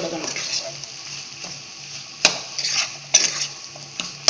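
Metal spatula scraping and knocking against a nonstick frying pan while stir-frying egg noodles with vegetables, over a faint steady sizzle. There are two sharp knocks, a little over two seconds in and about three seconds in, each followed by brief scraping.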